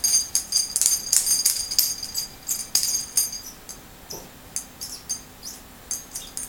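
Small brass lamp-kit parts clinking and rattling against each other in the hands as the socket fitting is taken apart: a quick run of ringing metallic clicks for about three seconds, then sparser clicks.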